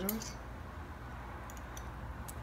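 A metal fork clicking lightly against glass a few times, faintly, as jalapeño slices are lifted from a glass jar, over a low steady hum.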